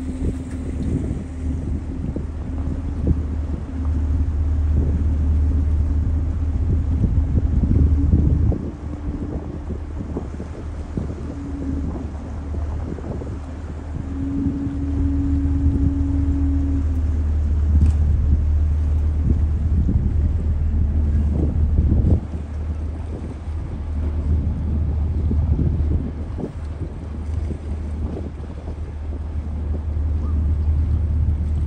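Low rumble of a passenger ship's engine heard from the deck, swelling and easing in stretches of several seconds as the ship manoeuvres toward a landing stage, with wind buffeting the microphone.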